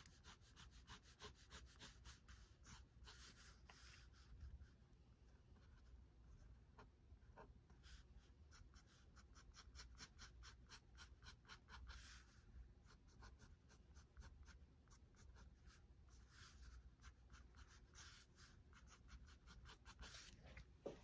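Faint scratching of an old Pentel fountain pen's tip on paper, many quick drawing strokes in runs with short pauses.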